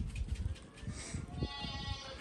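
A goat bleats: one high-pitched, steady call starting about one and a half seconds in, over low rumbling noise.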